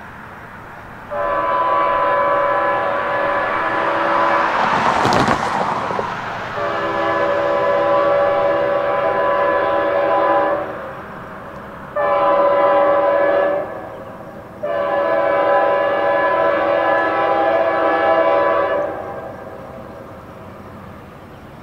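Nathan K5H five-chime air horn on an approaching freight locomotive, sounding a chord in two long blasts, one short and one long: the standard grade-crossing signal. A brief rushing burst cuts through about five seconds in.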